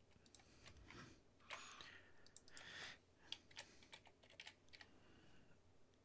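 Faint computer keyboard keystrokes and clicks, scattered and irregular, over quiet room tone.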